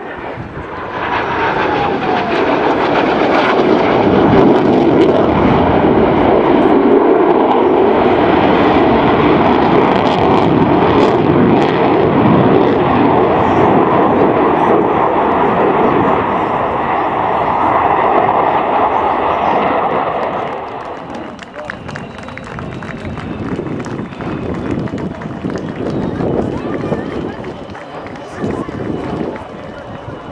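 Twin jet engines of a MiG-29 fighter in a display pass: loud jet noise builds about a second in with a brief falling whine, holds for about twenty seconds, then fades as the jet moves away.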